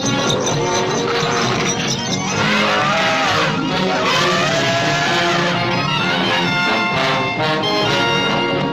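Orchestral theme music led by brass, trumpets and trombones, with swooping rising-and-falling notes in the middle.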